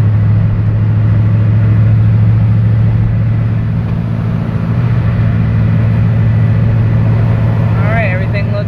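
Steady cabin noise of a truck driving on a rain-soaked, flooded road: a low drone from the engine and road with a hiss of tyres through water.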